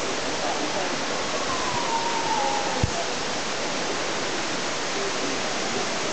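Steady rushing noise at an even level, with a faint falling whistle-like tone about a second in and a single low thump near the middle.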